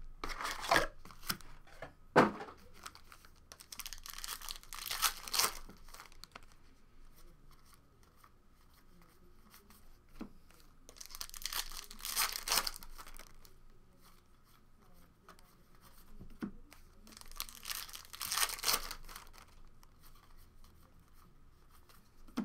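Foil packs of Panini Contenders Football trading cards being torn open and crinkled by hand, in several bouts of a second or two with quieter gaps between. A sharp knock comes about two seconds in.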